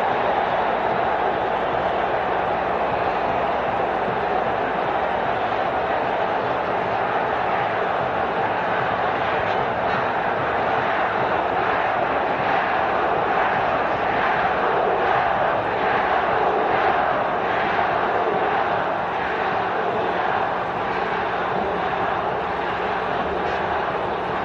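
Large football stadium crowd: a steady, continuous din of many voices.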